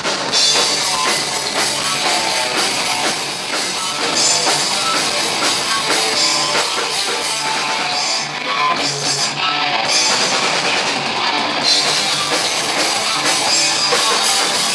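Punk rock band playing live at full volume: distorted electric guitars through amplifiers over a drum kit with crashing cymbals, as the song kicks in. The sound is loud and dense, with the top end easing briefly about eight seconds in.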